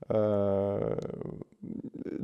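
A man's drawn-out hesitation sound, a steady 'ehh' held for under a second, trailing off into a creaky rasp as he searches for the next words.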